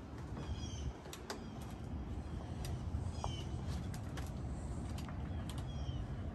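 Birds chirping in short repeated calls over a steady low outdoor rumble, with a few light clicks.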